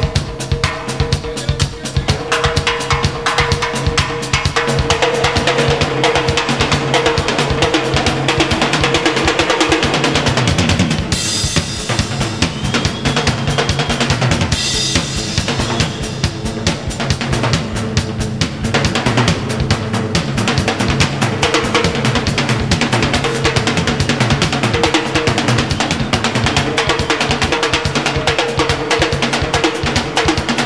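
Live rock music led by a Tama drum kit played in a fast, dense pattern, with cymbal crashes a third of the way through and again near the middle, over low bass notes and a held higher tone.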